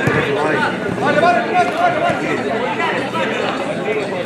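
Many overlapping voices chattering at once, spectators and players talking and calling, steady throughout with no single voice standing out.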